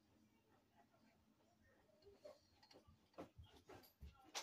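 Near silence, with a few faint clicks and taps in the second half from a curling iron being handled on a wig.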